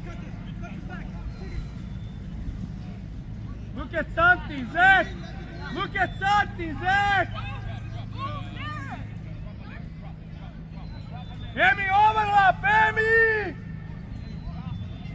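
People shouting across a soccer pitch: a run of loud, drawn-out calls about four seconds in and another burst near the end, over a steady low background rumble.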